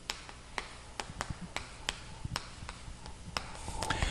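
Chalk tapping and scraping on a chalkboard as characters are written: an irregular run of short, sharp clicks, a few a second.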